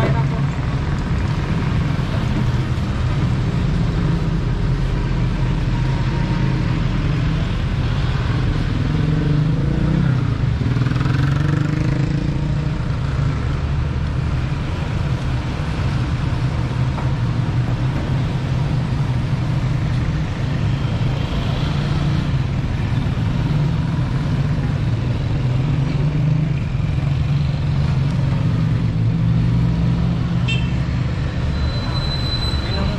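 Steady low hum of motor-vehicle engines from road traffic.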